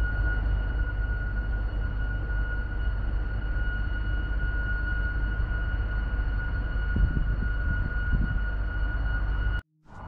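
Steady drone of a gas-turbine power station: a constant low rumble with a high, unchanging whine and its overtones above it. It cuts off sharply just before the end.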